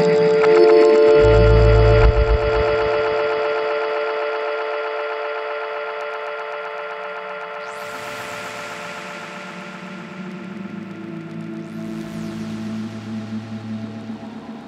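Dark lo-fi glitch electronic music played live on hardware samplers. A sustained chord slowly fades, under a deep bass note about a second in. A rush of noise swells in past the middle, and low pulsing beats come back near the end.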